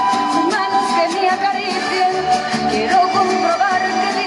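Live band music played through a PA: a woman singing into a microphone over guitar and a drum kit, with a steady beat.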